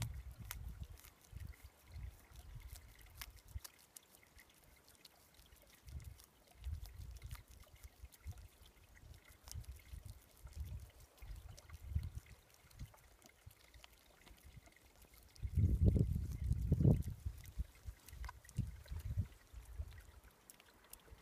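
Sea water trickling and lapping gently along a rocky shoreline, with scattered small clicks and uneven low rumbling surges; the loudest surge comes about three-quarters of the way through.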